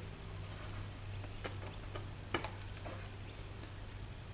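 A few faint clicks and taps from a small screwdriver and hands working an elevon linkage stopper on a foam model airframe, one sharper click a little past halfway.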